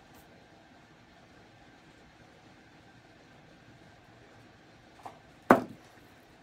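Quiet room tone, then a faint tap and, about five and a half seconds in, one loud, sharp knock.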